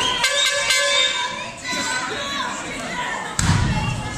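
A wrestler hitting the wrestling-ring canvas: one heavy impact about three and a half seconds in, with a deep boom from the ring's boards. A few sharp slaps come in the first second, and crowd voices shout throughout.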